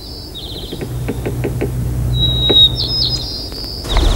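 Small birds chirping and trilling in the background, with a few faint clicks in the first half and a low hum through the middle.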